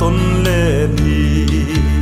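Mizo pop song: a male voice holds a wavering note that ends about a second in, over acoustic guitar, bass and a few drum hits.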